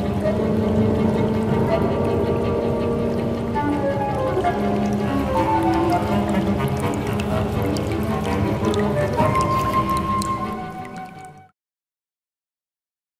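Contemporary chamber ensemble with cello playing slow, overlapping held notes and chords. The music fades and then cuts off abruptly near the end.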